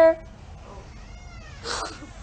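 A woman crying: a drawn-out, steady-pitched wail fades out just after the start, then a faint high whimper rises and falls about a second in, and a short sharp breath comes near the end.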